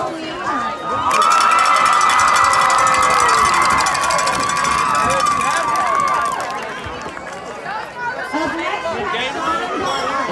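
Crowd cheering, with long high-pitched screams over a rapid high clatter for about five seconds. It then dies down to chatter and scattered shouts.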